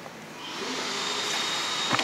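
A steady rushing noise with a faint high whistle fades up about half a second in and holds, with a sharp click near the end.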